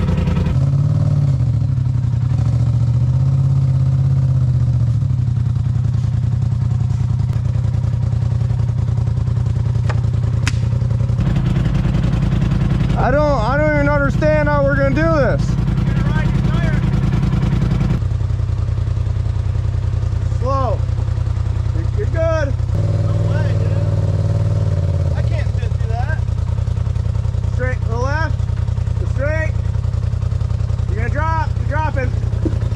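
Polaris RZR Turbo side-by-side's engine running low and steady while it crawls over rocks, its note shifting abruptly a few times, with short bursts of voices over it.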